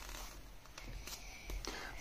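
Faint rustle of hands pressing and smoothing down the pages of an open paperback book, with a few soft paper scuffs in the second half.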